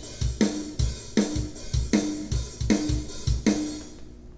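EZdrummer software drum kit playing back a steady programmed beat: kick drum and snare with hi-hat and cymbals, with the snare about every three-quarters of a second. It stops just before the end.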